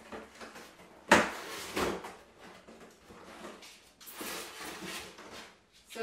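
Cardboard appliance box being opened and unpacked: a sharp knock about a second in and another just after, then rustling and scraping of cardboard flaps and paper packaging.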